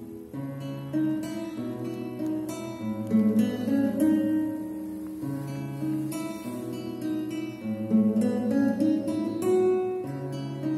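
Nylon-string classical guitar played fingerstyle: single plucked melody notes over low bass notes that ring on beneath them.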